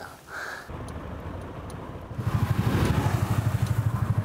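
Delivery motorcycle engine running, growing louder about two seconds in with a fast, even pulsing beat. A brief high tone sounds just before the engine comes in.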